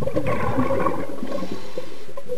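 Scuba diver exhaling through a regulator underwater: a burst of bubbling gurgle that lasts most of two seconds, then fades.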